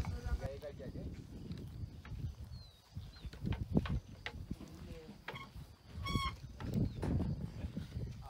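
Wild animal calls: a few short high chirps near three seconds in and one louder high call just after six seconds, over low rumbling noise.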